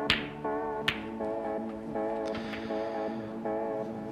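Two sharp clicks of snooker balls being struck, one at the start and one about a second in, over plucked-guitar background music.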